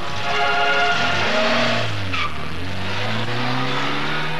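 A car driving past: a rush of tyre and road noise, then a low engine note that falls and rises again, with a brief high squeal about two seconds in.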